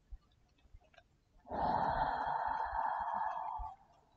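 A long audible exhale, a sigh, lasting about two seconds and starting about a second and a half in.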